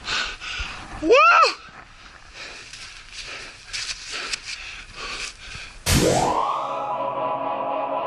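A short, loud excited whoop about a second in, then the hiss of skis running over snow with wind on the microphone. Near the end, music cuts in suddenly with a rising swoop that settles into a steady held chord.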